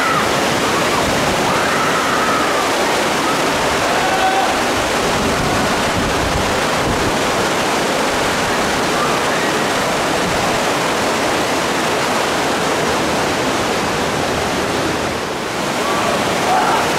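Loud, steady rush of whitewater rapids: a river pouring over and around rocks in big standing waves.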